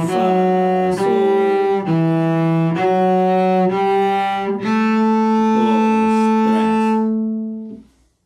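Solo cello bowing a slow line of single notes, about one a second: E, F-sharp and G stopped with the first, third and fourth fingers on the D string. It ends on a long open A string held about three seconds, which dies away just before the end.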